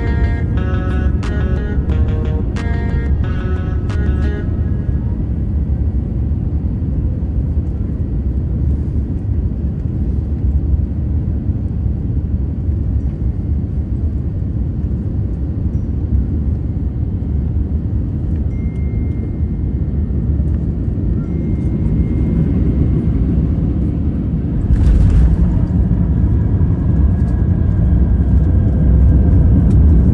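Background music with a steady beat stops about four seconds in. It leaves the steady low rumble of a Boeing 787-9 airliner's cabin on final approach. About 25 seconds in, the noise jumps suddenly as the wheels touch down, and a heavier rumble of the landing rollout follows.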